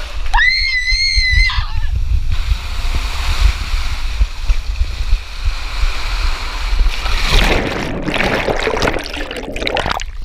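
Water rushing down a water slide, rumbling against the camera housing. About half a second in, a rider gives a high-pitched wavering scream that lasts about a second. Near the end the water churns and splashes louder as the rider drops into the pool.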